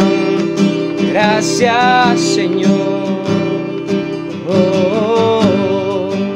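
Nylon-string classical guitar strummed in a steady rhythm, with a man singing a few long held notes over it, about a second in and again near the end.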